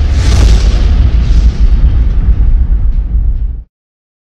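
A loud, explosion-like boom: a burst of noise with a deep rumbling bass tail whose hiss fades away over about three and a half seconds. It then cuts off suddenly.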